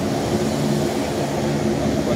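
An engine running steadily, a low drone made of several level tones with no change in pitch.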